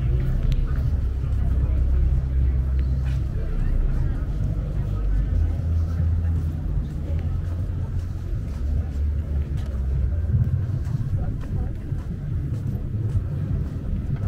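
Pedestrian shopping-street ambience: a loud, uneven low rumble, with voices of passers-by.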